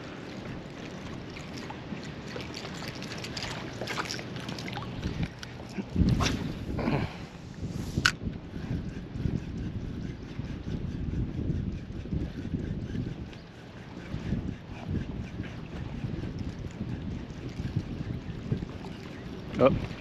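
Wind on the microphone and choppy water lapping, a steady rushing noise, with a few sharp clicks and knocks around the middle.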